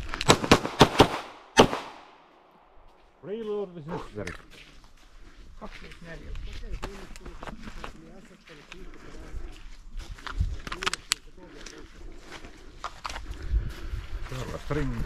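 Pistol shots fired in a rapid string, about seven cracks packed into the first second and a half, then a last shot just after. Fainter sharp cracks follow near the end.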